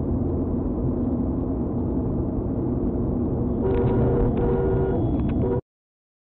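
Steady road and engine noise of a car driving at highway speed, picked up by a dashcam inside the car, with a steady humming tone joining about two-thirds of the way in. The sound cuts off suddenly near the end.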